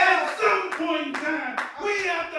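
Hand clapping in a steady beat under a man's amplified voice, drawn out in long, sliding held notes rather than spoken words.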